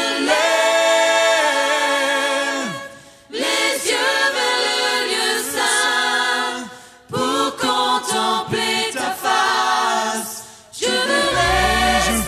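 Choir singing a French worship song a cappella, in sung phrases separated by short breaths. Near the end, low bass notes come in beneath the voices as accompaniment begins.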